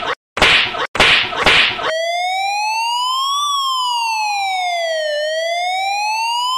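A few quick lashing strokes, each a short burst of noise with a gap between. At about two seconds in, an electronic siren tone takes over, sweeping steadily up and down in pitch.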